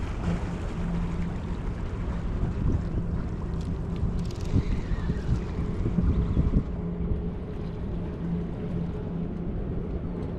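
Steady low drone of a boat's engine, with wind on the microphone and small waves washing against the rocks; the rumble swells for a couple of seconds around the middle.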